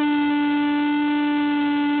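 A handheld horn sounding one loud, steady, unbroken tone.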